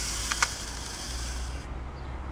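Clockwork wind-up mechanism of a Tomy Torpedo Terror pocket game whirring with a high hiss, with two small clicks about a third of a second in. It stops abruptly near the end as the spring runs down: it was not wound enough.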